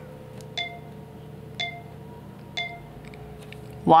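iMovie's voiceover countdown on an iPad: three short chime beeps, one second apart, counting down before recording begins.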